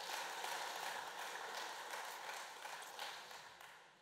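Audience applause in a hall, many hands clapping, dying away gradually until it has almost stopped near the end.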